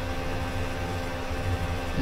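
Steady low hum with a faint hiss underneath, unchanging and with no distinct events: the background noise of the recording.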